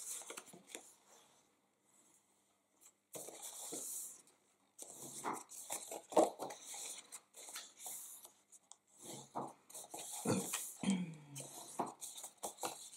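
Light cardstock being folded along its score lines and creased with a bone folder: paper rustling and crackling as the flaps bend up, and the scrape of the folder rubbing along a fold. A brief near-silent pause comes about two seconds in, then a steady rubbing stroke, then more rustles and taps as the sheet is handled.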